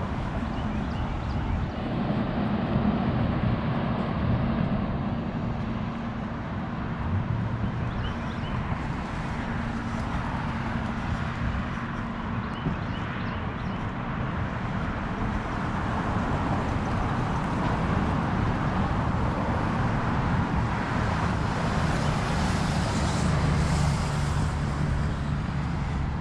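Steady outdoor road-traffic noise with a continuous low engine hum, a little louder in the second half.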